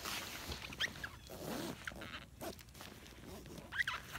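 Zipper on a Vertx EDC backpack's main compartment being pulled open. The zip's rasp is strongest in the first second or so, followed by quieter rustling of the bag's fabric.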